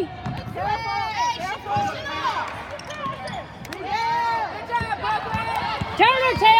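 Basketball being dribbled on a hardwood arena court, several irregular bounces, with short shouts from the stands in between.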